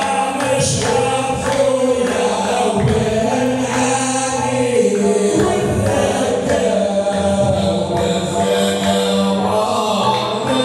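Hamadsha Sufi brotherhood's devotional chant: a group of men's voices singing together over regular percussion strikes.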